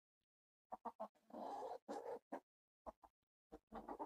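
Rhode Island Red hens clucking quietly: a scattered run of short clucks with gaps between them, and one longer, drawn-out cluck about a second and a half in.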